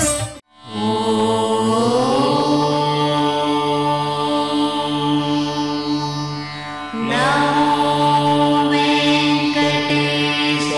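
Indian devotional music of long, chant-like held tones over a steady drone. It drops out briefly about half a second in, and a new phrase enters with a rising sweep about seven seconds in.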